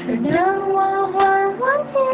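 Female voices singing a Mandarin pop ballad in an amateur acoustic cover: one long held note, then the melody rises into the next phrase near the end.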